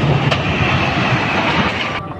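Passenger train running past with a crushed car pinned to the front of its diesel locomotive and dragged along the rails: a loud, steady rumble and rattle with a few sharp clicks.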